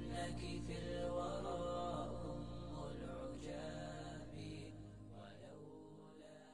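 Background music with a chant-like voice over a steady low drone, slowly fading out.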